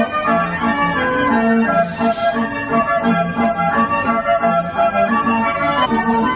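Organ-style carousel music: a lively melody of short, stepped notes playing steadily.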